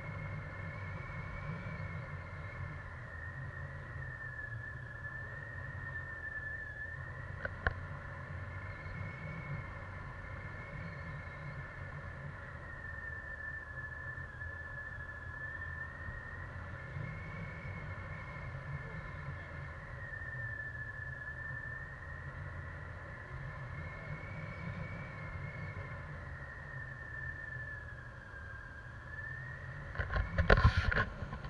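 Wind rushing over the camera microphone in paraglider flight, with a steady whistling tone that slowly wavers up and down in pitch. A single sharp knock about eight seconds in.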